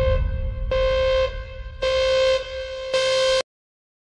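A horn-like tone sounds in repeated blasts of one steady pitch, about one a second, over a low rumble. It cuts off abruptly about three and a half seconds in.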